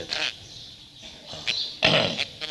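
A man's throat-clearing cough in a pause of a talk: a short rough burst at the start, a lull, then a voiced, grunt-like throat sound near the end.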